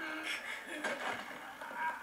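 Audio of an anime fight scene: a brief voice sound at the start, then a few sharp clicks or hits about a second in.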